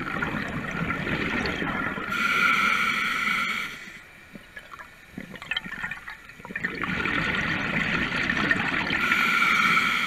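A diver breathing through a scuba regulator underwater: two breath cycles of rushing, bubbling air about six seconds apart. Each lasts about four seconds and ends in a brighter hiss, with a quieter pause between them.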